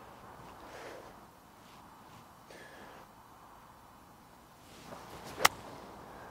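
Faint outdoor background, then one sharp click near the end: a golf wedge striking the ball on an approach shot.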